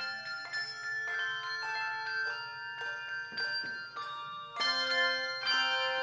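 Handbell choir playing: handbells are struck in chords and single notes, each note ringing on and overlapping the next. A louder group of strikes comes about four and a half seconds in.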